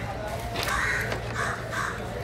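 A crow cawing three times in quick succession, starting about half a second in, over a steady low background hum.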